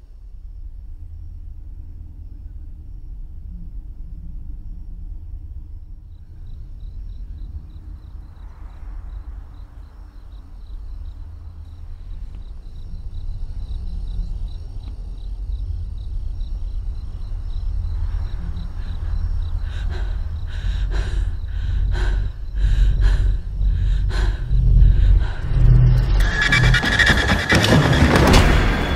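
Thriller film soundtrack: a low rumbling suspense drone that builds steadily in loudness, joined about two-thirds of the way in by a series of sharp hits, and loudest near the end.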